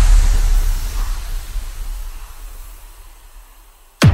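Sound effect of an animated logo outro: a deep rumble with a hiss above it, loud at first and fading steadily over about four seconds.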